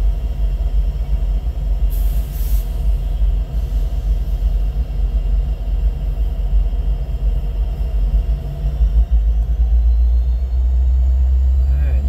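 EMD SD60 diesel locomotive's 16-cylinder 710 prime mover running at a low throttle setting close by, a steady low rumble. A brief hiss comes about two seconds in.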